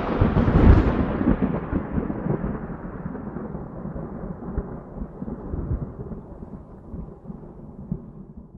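Thunder sound effect: a rolling rumble, loudest in the first second, fading away slowly with a few scattered cracks.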